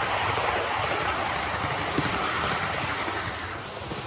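00 gauge model train running on the layout, heard as a steady rushing noise that eases off near the end.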